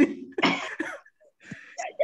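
A few short, breathy vocal bursts from a man, between stretches of speech on a video call.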